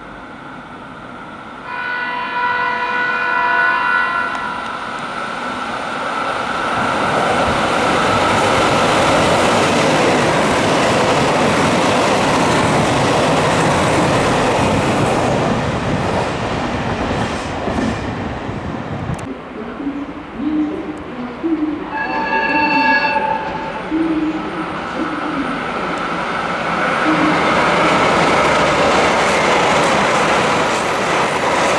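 Trains at a station: a train horn sounds for about two seconds near the start, then the loud running rumble of a train builds and holds for over ten seconds. A second, shorter horn blast comes a little past two-thirds of the way through, and another train's running noise rises near the end.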